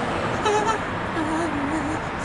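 Steady background traffic noise, with short wavering voice-like sounds over it, one about half a second in and a longer one in the second half.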